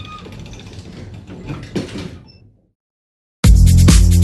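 A mechanical-sounding effect with a few knocks over a low hum for about two and a half seconds, then a short silence, then loud electronic music with a heavy beat starting near the end.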